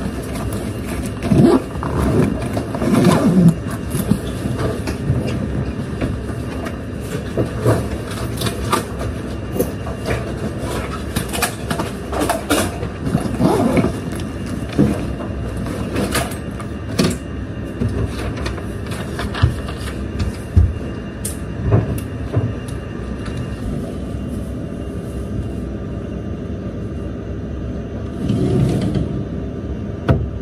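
Handling sounds of packing a backpack and moving things on a desk and shelf: scattered knocks, clatters and rustles of books, a plastic bottle and a bag, over a steady low rumble.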